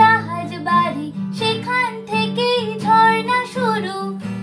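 A woman singing a Bengali song to an acoustic guitar accompaniment.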